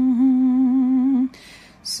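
A single voice humming one held, slightly wavering note of the canticle tune, which stops about a second and a quarter in; a short breath follows just before the next sung line begins.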